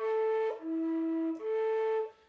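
Romanian caval (long wooden end-blown flute) playing three held notes: a higher note, a drop to a lower note for about a second, then back up to the higher note. The notes are clear and steady, with the breath pressure kept under control so that they do not overblow.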